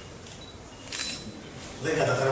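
A camera shutter clicks about a second in, over quiet press-room tone. A man's voice begins near the end.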